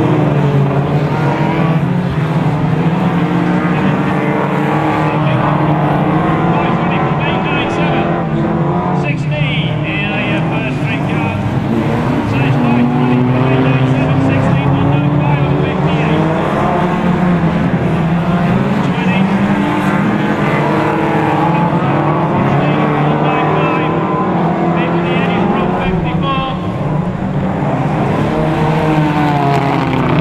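Several Hot Rod racing cars' engines running hard together, their pitches rising and falling as the cars accelerate and lift off around the oval.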